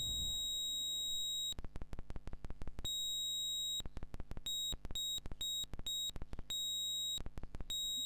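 Doepfer Eurorack VCO square wave with its pitch switched by a square-wave LFO, jumping up and down between a very high-pitched tone and a low buzz of rapid clicks, flipping several times at uneven intervals.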